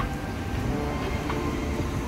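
Street noise: a steady, heavy low rumble of passing traffic.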